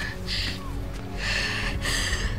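A young woman's breathy, distressed gasps, three in a row, over background music.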